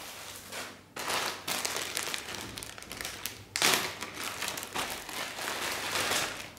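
Clear plastic bags crinkling and rustling as they are handled, with a louder rustle about three and a half seconds in.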